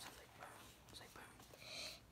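Near silence, with faint whispered speech near the end.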